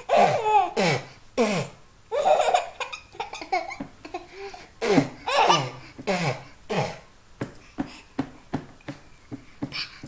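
Two children laughing: a young girl makes a run of short laugh-like calls, many sliding steeply down in pitch, about one a second, and a baby laughs along with her.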